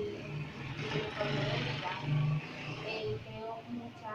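A motor vehicle passing, its noise swelling to its loudest about two seconds in and then fading.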